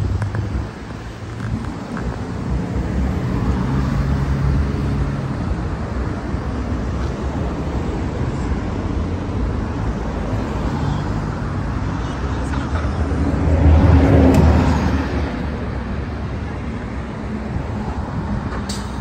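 Road traffic on a multi-lane city street: a steady rumble of cars driving past, with one vehicle passing close and loudest about fourteen seconds in.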